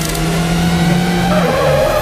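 A motor vehicle engine revving in a film soundtrack, with music underneath; its held note steps down in pitch about a second and a half in.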